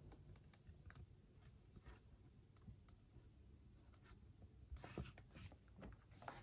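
Near silence: room tone with faint, scattered light clicks and a soft rustle a little before the end, from a paper picture book being held up and handled.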